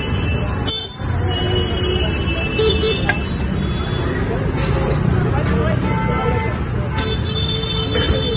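Busy street traffic, with vehicle horns tooting several times over a steady rumble of passing vehicles, and people talking.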